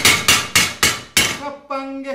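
A wayang kulit puppeteer's sharp rhythmic knocks: a fast run that slows to single knocks about a third of a second apart, the percussive signals a dalang beats out to accompany and cue the puppet's movement. Near the end a man's voice starts a held sung note.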